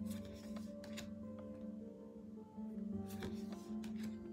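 Soft background music with steady held tones. A few light clicks of stiff tarot cards being handled and flipped fall over it, several in the first second and a small cluster about three seconds in.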